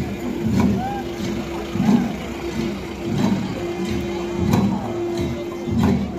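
Garo long drums (dama), many struck together, beating a slow, heavy pulse about every 1.3 seconds. Under them runs a steady held drone note that breaks off briefly now and then, with crowd voices in the background.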